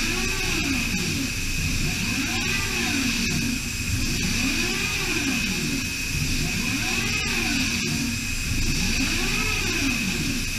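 DMG Mori DMU 65 monoBLOCK five-axis CNC machining centre milling aluminium under flood coolant, the spindle running at a steady pitch over spraying coolant. A lower tone rises and falls in pitch over and over, about once every second or two, as the axes sweep the tool back and forth across the part.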